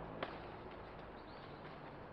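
Quiet outdoor background with one short click about a quarter second in, as ripe ackee pods are picked by hand from the tree.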